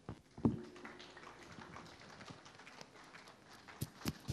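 Faint footsteps on a raised stage floor: a couple of heavier knocks in the first half-second, then scattered light taps, and two sharper knocks near the end.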